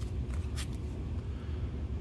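Faint rustle and a few light ticks of trading cards being shuffled through by hand, over a low steady hum.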